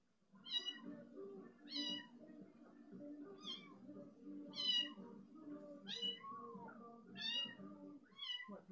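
A cat meowing over and over: six short, high meows, each falling in pitch, evenly spaced a little over a second apart, over a low steady background hum.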